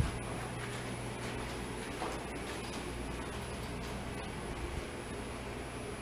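Steady low hum of a quiet elevator lobby, with a few faint, irregular clicks from something nearby whose source isn't clear.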